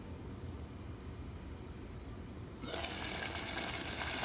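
Low rumble, then about two and a half seconds in a loud crackling hiss starts suddenly: spaghetti and meat sauce sizzling in a hot pan.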